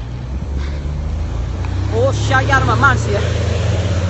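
A motor vehicle's engine running close by in street traffic as a low, steady hum that grows slightly louder. A woman's voice speaks briefly about halfway through.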